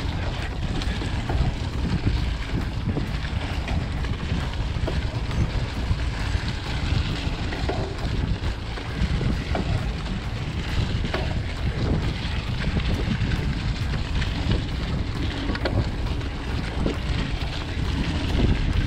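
Wind rushing over the camera microphone on a moving mountain bike, with its tyres rolling over dry leaf litter on a forest trail and small clicks and rattles from the bike throughout.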